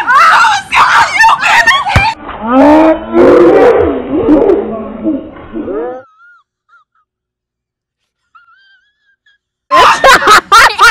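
Loud shouting and yelling for about two seconds, then a deep, drawn-out moaning voice sliding up and down in pitch for about three seconds from an edited-in meme clip, followed by near silence broken by a few faint chirps until shouting returns just before the end.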